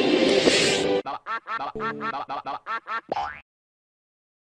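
Edited logo-jingle audio: about a second of music with a bright hissing shimmer, then a rapid stuttering run of about ten short, clipped blips at four or five a second, each bending in pitch. The sound stops abruptly half a second before the end.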